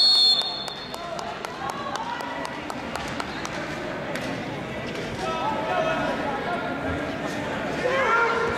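A referee's whistle blows once at the start, a high, steady tone for about half a second, stopping the action. Then comes the murmur of voices in a large hall with scattered sharp knocks.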